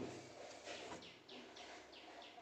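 A bird chirping faintly in a quick series of short falling notes, about four a second.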